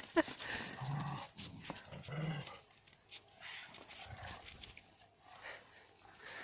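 Shepherd dogs and puppies playing in the snow, with two short low growls about one and two seconds in. A person laughs at the very start.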